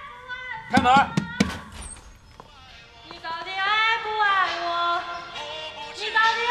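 About four quick knocks on a wooden apartment door about a second in. From about three seconds in, a girl sings a karaoke song into a microphone over backing music.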